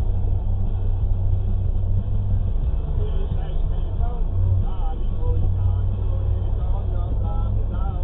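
Steady low rumble of a car idling while stopped in traffic, heard from inside the cabin, with faint voices over it from about three seconds in.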